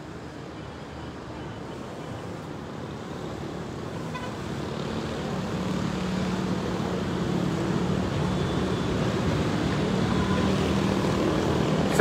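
Road traffic noise that grows steadily louder, with a steady engine hum joining about halfway through as a vehicle draws near.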